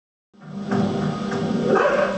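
Television soundtrack heard from across a room: background music with a dog barking near the end.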